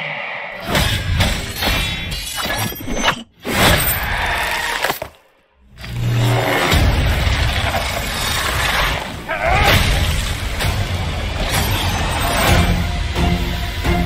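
Film-trailer music layered with shattering and breaking sound effects. It cuts out briefly about three seconds in and again about five seconds in, then runs on loud and continuous.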